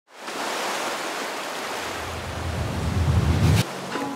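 Ocean surf with wind, a steady rushing noise. A low rumble swells under it from about halfway through and cuts off suddenly just before the end.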